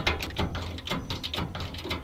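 Hydraulic 20-ton low-profile bottle jack being pumped by its handle, a series of irregular metallic clicks as it lifts the trailer frame.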